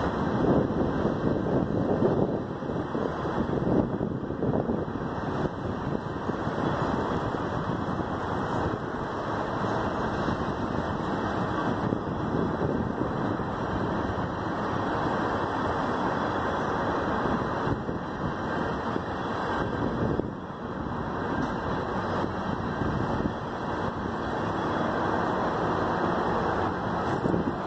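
Freight train of tank cars and a covered hopper rolling past close by: a steady rumble and rush of steel wheels on rail.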